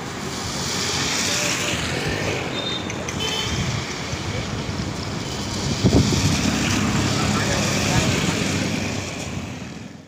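Auto-rickshaws driving past on a water-covered road: small engines running and tyres rolling through standing water. The sound swells twice, loudest as one passes close about six seconds in.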